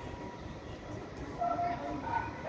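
Railway station platform background: a steady low rumble with a faint constant hum, and short snatches of distant voices near the end.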